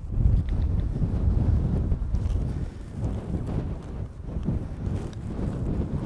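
Wind buffeting the microphone outdoors: an uneven low rumble that swells and drops in gusts.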